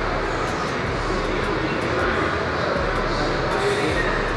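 Steady, even background hiss of a large gym's room noise, with no distinct knocks or clanks.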